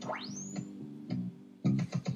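Instrumental backing of a children's classroom song playing, with a quick rising sweep in pitch near the start and the music coming in louder near the end.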